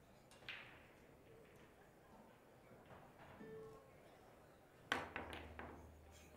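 A jump shot to escape a snooker. About five seconds in, a jump cue strikes the cue ball with a sharp crack, then a quick run of three or four clicks follows as the ball comes down and makes contact, with a low rumble as it rolls. A single faint click comes about half a second in.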